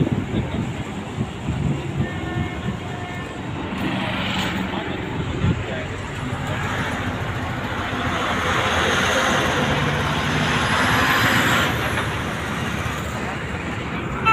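Highway traffic running past, a steady road noise that swells in the second half as a vehicle goes by.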